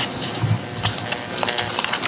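Several short, faint clicks and rustles over the room noise of a large hall.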